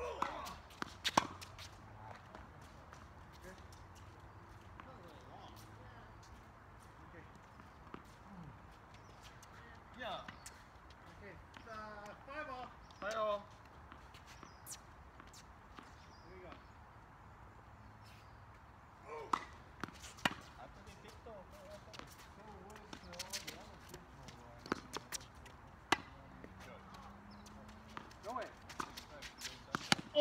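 Tennis balls struck by rackets and bouncing on a hard court during doubles play: scattered sharp pops that come in short runs of a few hits, with quieter gaps between them.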